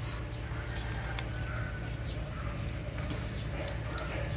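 A few faint metallic clicks from hand tools working at a diesel engine's glow plugs, over a steady low background hum.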